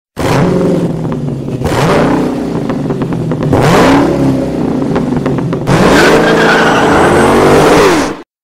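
A car engine revving hard three times, each rev climbing in pitch and then holding at high revs, with abrupt jumps between the revs.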